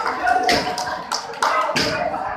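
A handful of sharp, irregularly spaced taps, about five in two seconds, with snatches of voice between them.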